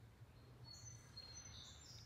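Near silence: faint outdoor background with a few thin, high bird calls from about half a second in.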